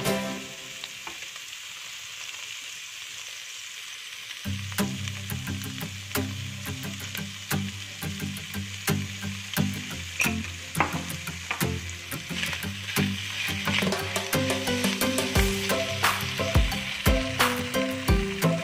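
Minced pork and diced carrot sizzling in a hot non-stick pan as a dark sauce is poured in, with a steady hiss. The meat is then stirred with a spatula that scrapes and knocks against the pan many times.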